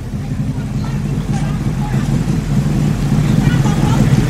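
Sheriff's patrol car idling: a steady low engine hum that grows louder as the microphone draws close to the car.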